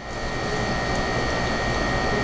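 A steady, even rushing noise with a faint thin whine, unchanging in level throughout.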